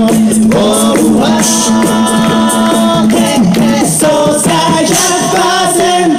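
A cappella group of six voices singing live: sustained harmonised chords over a steady held bass note, with a vocal-percussion beat of high ticks about twice a second.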